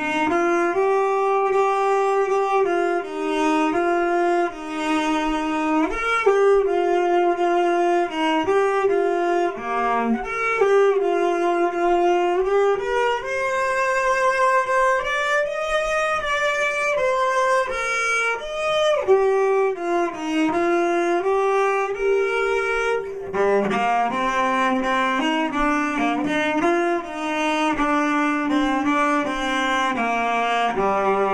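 A large bowed string instrument played solo: a melody of sustained bowed notes in its upper-middle range, with a few slides between notes.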